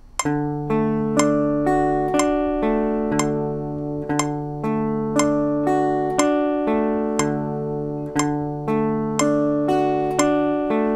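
Archtop hollow-body guitar picking D major arpeggios one note at a time, about two notes a second, each note left ringing over the next.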